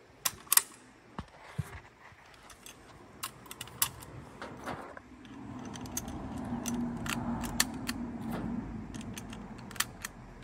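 Metallic clicks and rattles from a Mosin-Nagant 91/30 bolt-action rifle being handled and reloaded at the receiver, coming thicker in the second half. A low hum swells in the background from about halfway through and fades near the end.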